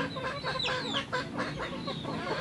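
Chickens clucking: a string of short calls.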